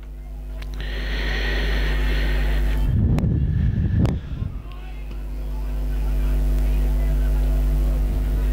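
A steady low hum with evenly spaced overtones. A rumbling burst with two sharp knocks comes about three seconds in, and the level swells again after it.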